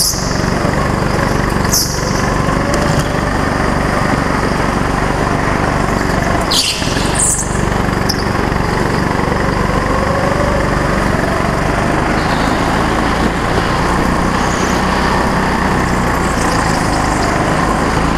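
Go-kart engine running continuously under throttle from on board, its pitch drifting slightly up and down through the corners, with a few brief high-pitched squeals.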